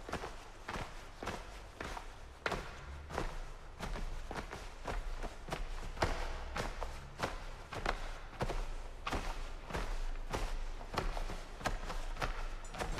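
Footsteps walking at a steady pace, about two steps a second.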